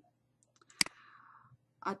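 A single sharp computer mouse click about a second in, selecting an answer on screen, followed by a brief faint hiss.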